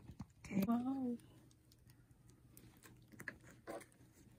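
Light clicks and taps of small plastic miniature food pieces being handled on a table, with a short hummed voice sound about half a second in.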